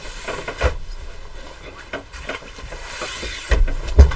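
Bolts of fabric being handled on a table: cloth rustling and sliding, with a few light knocks and a dull thump near the end as a bolt is set down.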